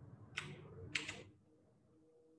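Two keystrokes on a computer keyboard, sharp clicks about half a second apart, the second a little longer.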